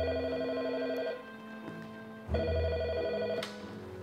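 Desk telephone bell ringing twice, each ring about a second long with a rapid trill, a second's pause between them: an incoming call.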